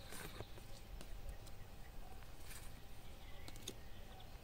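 Cards being shifted and swapped by hand: soft, scattered clicks and slides, a little more distinct about two and a half seconds in and again near the end, over a faint low outdoor background.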